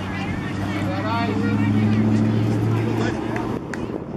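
A motor engine running steadily with a low, even hum that grows louder toward the middle and stops about three seconds in, with calling voices over it. A sharp click comes near the end.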